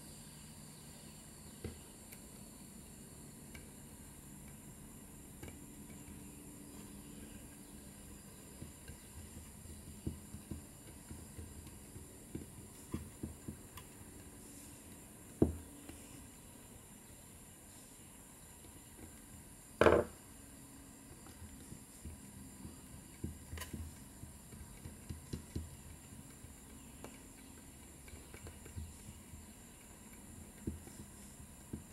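Faint handling sounds of rubber intake gaskets being pressed into the grooves of a plastic intake manifold, with scattered light taps and clicks. Two louder knocks stand out, about halfway through and again a few seconds later.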